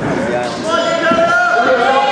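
Several voices shouting long, drawn-out calls, the way coaches and spectators yell during a wrestling bout, with some low knocks underneath.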